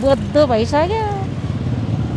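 Low, steady rumble of street traffic, with a voice speaking briefly in the first second or so.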